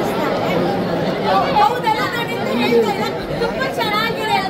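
Speech only: animated talking over the steady chatter of a crowd.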